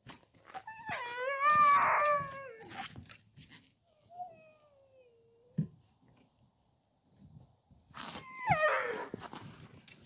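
Harnessed Siberian huskies howling and whining before a sled run: a long wavering howl in the first few seconds, a fainter falling whine around the middle, and a call that drops steeply in pitch near the end. A short knock comes just after the middle.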